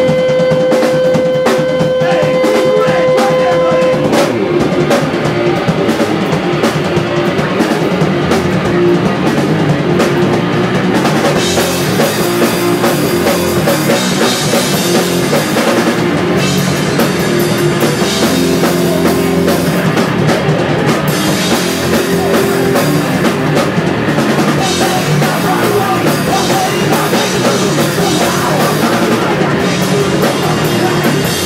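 Crust hardcore band playing live at full volume: drum kit and distorted electric guitars. A single steady held note rings over the band for the first four seconds.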